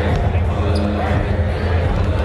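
Basketballs bouncing on the court amid the steady background noise of a large arena.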